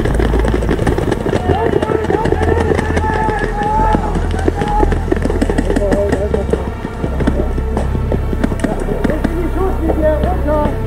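Background music with a deep sustained bass, over indistinct voices and a busy run of quick clicks, knocks and footfalls from players running with their gear.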